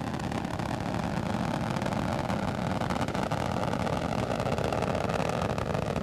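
Space Shuttle Atlantis's two solid rocket boosters and three liquid-fuel main engines firing in ascent: a steady, deep rumbling noise with a fine crackle running through it.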